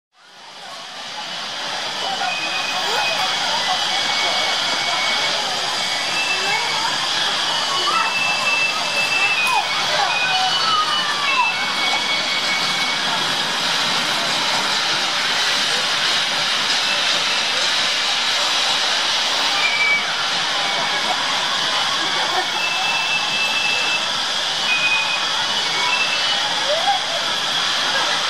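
Zoo background ambience: a steady hiss with distant voices and short, high, steady-pitched calls that come and go, fading in over the first couple of seconds.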